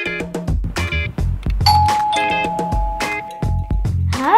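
Two-note ding-dong doorbell chime: a higher note a little under two seconds in, then a lower one about half a second later, both ringing on for about two seconds. It plays over background music with a steady beat.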